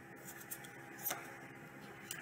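Faint room tone with two light taps, about half a second in and just after a second in, as single playing cards are dealt onto a table pile.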